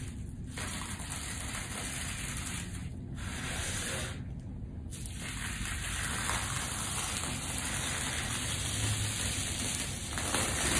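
Bubble-wrap plastic being peeled away from a layer of dried paint: a continuous crackling, tearing rustle close to the microphone. It breaks off briefly just after the start, at about three seconds and again around four to five seconds in.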